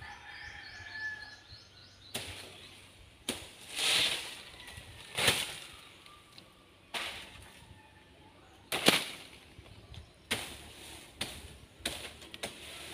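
Coconut palm fronds being cut and pulled loose high in the tree: a series of about ten sudden swishing, rustling thrashes, some starting with a sharp crack, a second or so apart.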